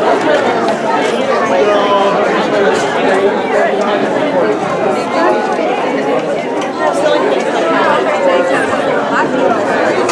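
Crowd chatter: many people talking at once in a hall, a steady jumble of overlapping voices.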